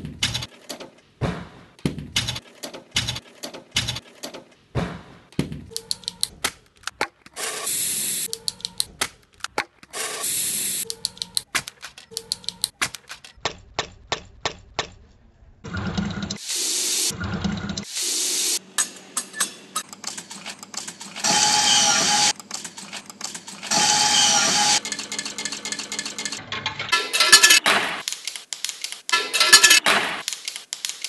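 Two looped beats built from sounds recorded around a school. In the first, from a glass entrance door, sharp clicks and knocks come about twice a second, broken by a couple of longer hissy bursts. After a short lull about halfway, the second beat uses water running from a drinking-water dispenser into a plastic bottle, with repeated bursts of rushing noise and a clicking rhythm.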